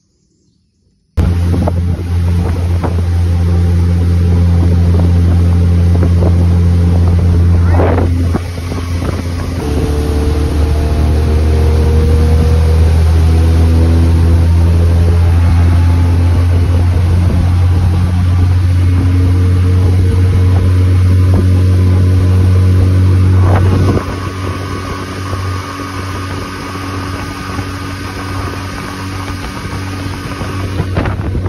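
Suzuki outboard motor running steadily under way, pushing an aluminium jon boat, with wind and water noise. It starts about a second in and gets noticeably quieter about three-quarters of the way through.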